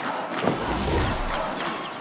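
A single hard thud about half a second in, with a low rumble lingering for about a second after it: a wrestler's blow landing on her opponent's back in the ring. Arena crowd noise runs underneath.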